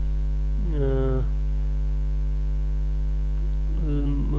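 Steady electrical mains hum on the recording, a constant low drone throughout. A man's voice holds one drawn-out sound, falling in pitch, about a second in, and speaks again near the end.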